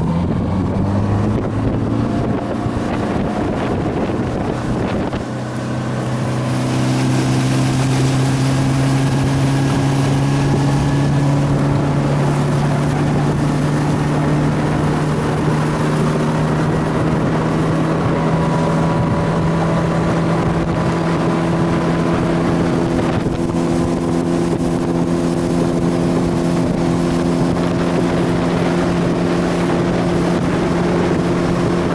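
Bass boat outboard motor accelerating, its pitch climbing over the first several seconds, then running at a steady cruising speed with the rush of wind and water.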